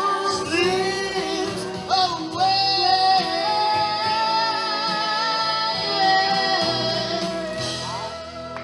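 A woman singing live into a microphone over musical accompaniment, holding one long note with a slight vibrato for about five seconds.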